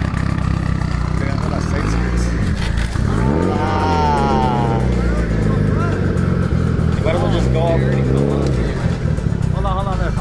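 Mitsubishi Lancer Evolution's turbocharged four-cylinder engine idling steadily as the car sits on a tilting car-trailer deck, with voices over it.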